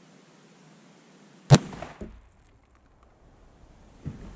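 A single .30-06 Springfield rifle shot, heard from beside the ballistic gel target that the bullet strikes. A smaller, sharp bang follows about half a second later, and a softer thump comes near the end.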